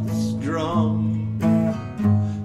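A country-folk song: acoustic guitar with steady bass notes and a voice holding a wavering sung note between lines.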